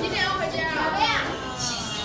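Children's voices chattering and calling out, high-pitched and overlapping, with one louder rising cry about a second in.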